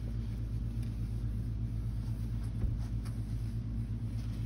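Steady low mechanical hum of workshop background machinery, with one brief faint knock a little past halfway.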